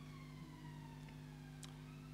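A faint siren: one wailing tone falling slowly in pitch, over a steady low hum.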